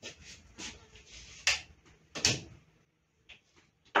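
A few sharp clunks and clicks of hands working the parts of a combination planer-jointer while it is changed over from jointer to planer mode, the two loudest about a second and a half and two seconds in, with fainter ticks near the end.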